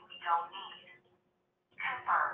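Speech only: a narrating voice sounding narrow, as over a phone line, stopping about a second in and resuming near the end.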